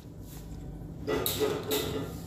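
Metal pressure cooker lid scraping and rubbing against the cooker's rim as it is fitted and twisted shut, starting about a second in, with a couple of stronger scrapes.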